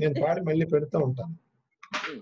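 Speech heard through a video-call connection. It breaks off about 1.3 seconds in, leaving a dead-silent gap, and a short noisy sound comes near the end.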